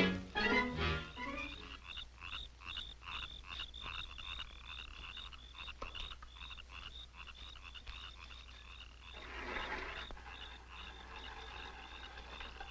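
A brassy swing music cue ends in the first second or so, then a faint night-time chorus of frogs chirping in quick, even pulses, several a second. A brief swell of noise comes about nine seconds in.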